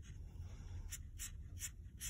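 Tip of a Pentel water-based felt-tip marker scratching on watercolor paper in a quick run of short, faint strokes, about four a second, as eyelashes are flicked out from the lash line.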